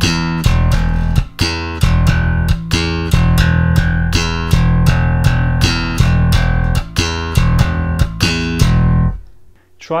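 Electric bass guitar, a Fender Jazz Bass, playing a slap-and-pop line in a swung triplet feel: thumb-slapped open E notes answered by popped octaves, played short and staccato. The line stops about nine seconds in.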